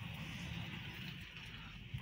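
Gusty wind in a snowstorm, heard as a steady low rumble with a hiss above it.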